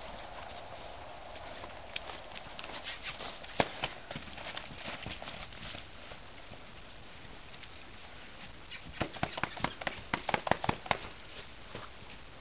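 Paint mare's hooves striking muddy, leaf-covered ground as she trots: two runs of quick, sharp footfalls, the second, near the end, louder and closer together.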